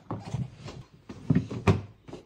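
A few short knocks and thumps, the two loudest close together in the second half.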